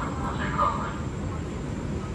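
A station platform announcement voice trails off about half a second in, then a steady low rumble from the standing electric train and the station is left.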